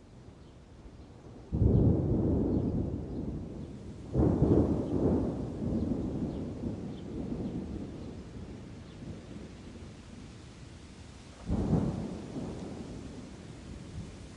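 Thunder in a rainstorm: three sudden claps, about a second and a half in, about four seconds in and about eleven seconds in, each rolling off into a long low rumble. A faint steady hiss of rain lies underneath.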